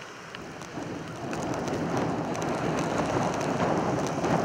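Storm wind blowing hard against the microphone, a rough, steady rush that swells about a second in, with faint ticking from blown snow.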